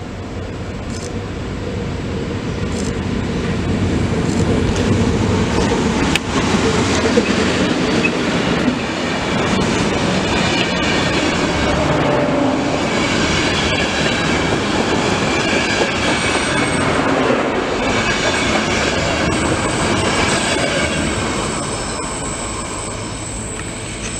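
A Polish EU07 electric locomotive and its train of passenger coaches passing close by at speed. The noise builds as the train approaches, holds as the coaches' wheels run past on the rails, with thin high-pitched squealing tones in the middle of the pass, and eases off near the end as the train leaves.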